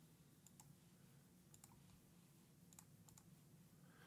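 Near silence with scattered faint computer mouse clicks, a few at a time.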